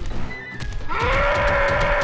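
A cartoon character's high-pitched scream of fright, starting about a second in and held steady for about a second and a half, over cartoon background music.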